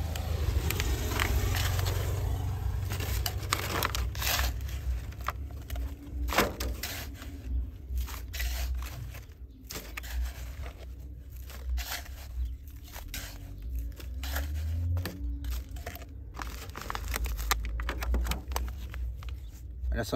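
Small metal garden trowel digging into and scooping medium-grade building sand, a series of irregular gritty scrapes and crunches as the blade cuts the pile and sand drops into a plastic tray, over a steady low rumble.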